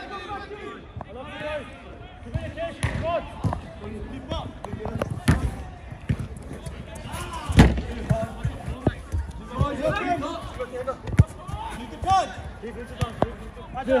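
Players' voices calling across the pitch, broken by several sharp thuds of the football being struck; the loudest thud comes about seven and a half seconds in.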